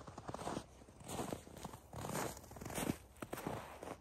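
Footsteps crunching through snow, a steady series of steps about every half second.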